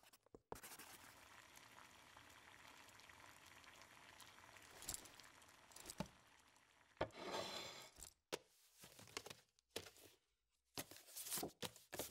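Quiet foley. A faint steady hiss gives way in the second half to several short rustles, crinkles and clicks of a stack of paper sign cards being handled and flipped.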